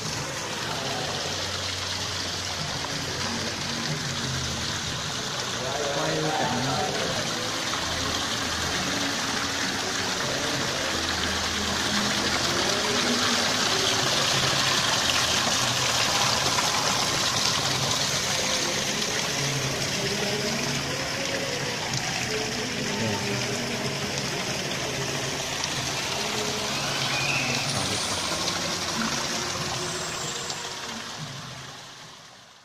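Small waterfalls of a rockery garden pouring steadily into a pond, a constant hiss and splash of falling water. Music and voices sound underneath.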